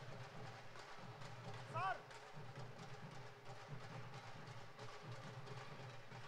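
Baul folk dhol drums beaten by hand in a steady, galloping rhythm, fairly faint, with a short tone that rises and falls about two seconds in, the loudest moment.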